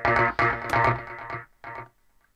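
Electronic synth stab from a house track's breakdown, a single pitched chord repeated about four times a second. It cuts off about one and a half seconds in, and one short note follows near the end.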